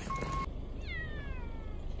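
A cat giving one long meow that starts about a second in and falls steadily in pitch for over a second. A short electronic beep sounds right at the start.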